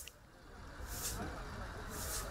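Low, steady boat-motor rumble, with a brief high hiss about once a second.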